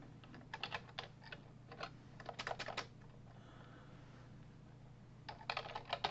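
Computer keyboard typing: quick runs of key clicks, with a pause of about two seconds in the middle.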